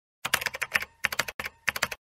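Keyboard-typing sound effect: rapid key clicks in a few quick runs with short gaps between them. It starts about a quarter second in and cuts off suddenly at the end.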